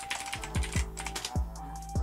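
Computer keyboard typing: a quick run of key clicks over background music.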